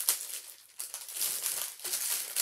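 Clear plastic kit bag crinkling and rustling as a printed cross-stitch canvas is slid out of it by hand, in uneven bursts with a short lull about half a second in.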